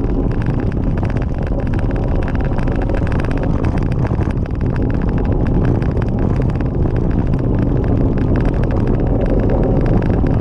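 Bicycle tyres rolling over a gravel track, a steady crunching rattle over heavy rumble from wind and vibration on the microphone.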